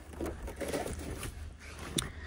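Faint rustling and handling noise as a hand holds and presses the carpet floor flap over the battery compartment, with one sharp click near the end.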